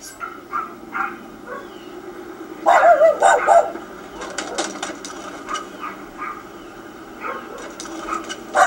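A dog barking, with its loudest wavering burst about three seconds in.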